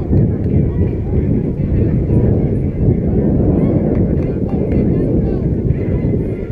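Wind buffeting the microphone as a loud, unsteady low rumble, with faint voices in the background.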